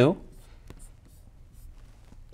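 Pen writing: faint scratches and a few light taps as the numbers are written.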